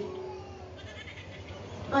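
A short pause in a man's amplified speech. The last held vowel trails off within the first second, followed by low steady room and microphone noise until he speaks again at the very end.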